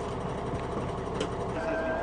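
Armoured military vehicle's diesel engine idling with a steady low rumble, and a single sharp click about a second in. A steady high-pitched tone starts near the end.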